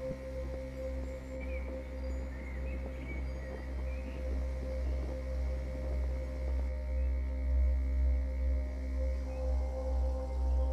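Ambient background music: steady held drone tones like a singing bowl over a deep bass that swells and fades about once a second.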